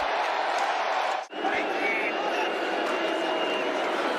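Steady stadium crowd noise from a football game, a dense haze of many voices. It drops out briefly about a second in, where one highlight clip cuts to the next.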